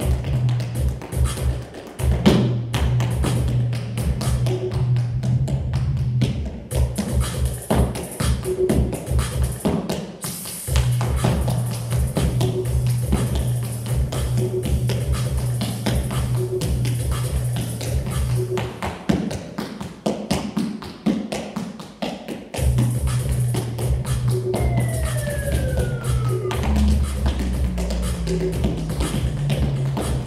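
Tap shoes striking a hard studio floor in quick runs of taps during a tap-dance warm-up, over recorded backing music with a steady beat.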